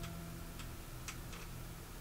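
The last chord of a steel-string acoustic guitar dying away, followed by a few faint clicks.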